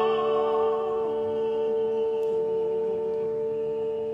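Closing bars of an operatic tenor recording: the tenor's held note with vibrato fades about a second in, while the accompaniment sustains a steady final chord.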